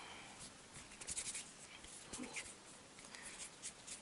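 Faint rubbing and light scratchy rustles of hands kneading a lump of Prochima RTV-530 two-part silicone mould putty, with a few small ticks.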